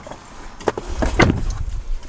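Handling noises from food containers: a few sharp clicks and knocks near the middle, over a low bumping rumble.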